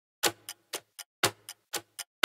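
Ticking-clock countdown sound effect marking the time to guess: sharp ticks about four times a second, every fourth tick louder, starting a moment after the music cuts off.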